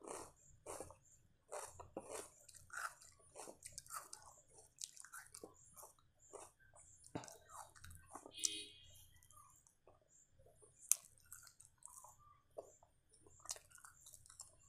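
Close-miked chewing and lip-smacking of a person eating chapati with mutton keema curry by hand: a steady run of short, wet mouth noises, with a few sharper clicks near the end and a brief pitched sound about eight and a half seconds in.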